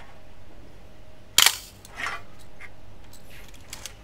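Yashica TL-Electro SLR film camera firing once at 1/30 s: a single sharp clack of the mirror and shutter about a second and a half in. Softer clicks follow as the film advance lever is wound to re-cock the shutter.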